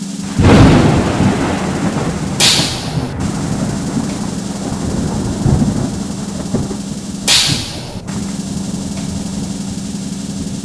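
Thunder sound effect played over stage loudspeakers: a loud rumble crashes in just under a second in and rolls on. Two short loud hisses about five seconds apart come from stage smoke jets, over a steady low hum from the sound system.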